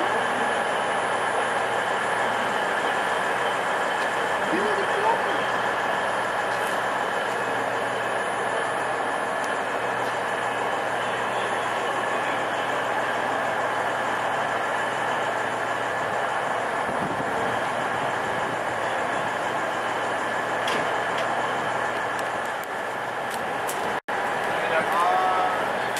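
Steady hum of a stationary passenger train standing at the platform, its on-board equipment running without a break and holding several steady tones, with faint voices under it.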